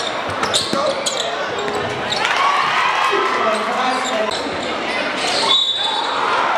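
Basketball being dribbled on a hardwood gym floor under the steady noise of a crowd of spectators, whose shouting swells about two seconds in. A short high tone sounds near the end.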